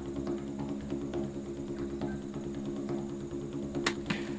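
Background music: a sustained low chord held steady, with faint ticking percussion and one sharp click near the end.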